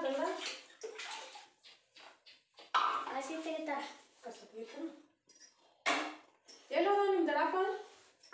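A person talking in short stretches, with one sharp knock or clatter about six seconds in.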